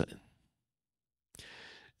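A man's breath drawn in close to a handheld microphone, a faint airy sound about half a second long near the end, after the last of a spoken word and a stretch of dead silence.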